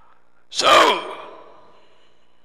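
A man's loud, breathy sigh close to a headset microphone, starting about half a second in, falling in pitch and dying away within about a second.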